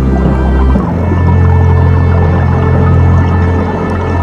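Background music: sustained low bass notes with held tones above them, the bass note shifting up about a second in.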